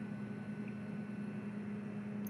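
Faint steady hum of a John Deere 9x70-series combine running at high idle, heard inside the cab.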